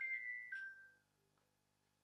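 Mobile phone ringing: two held electronic notes, the second lower than the first, stopping about a second in.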